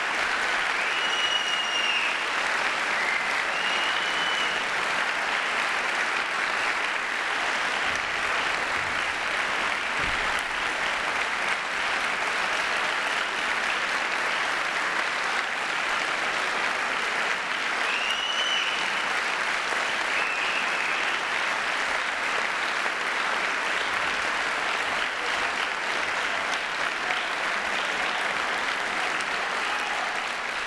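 Concert hall audience applauding steadily after a wind band's performance, with a few brief high calls rising and falling near the start and again around the middle.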